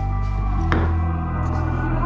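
Background music: sustained chords that change partway, with one struck note a little under a second in.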